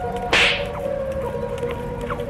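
A single sharp whoosh, like a whip crack, about a third of a second in, over steady background music.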